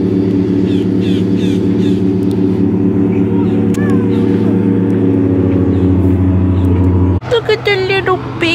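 A steady engine drone, a low hum with an even buzz above it, running unchanged until it cuts off abruptly near the end.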